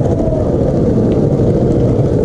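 Skateboard wheels rolling on concrete pavement: a loud, steady low rumble.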